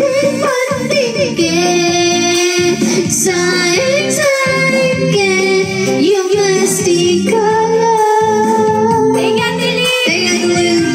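A woman singing into a handheld microphone over backing music, holding long notes, the longest near the end.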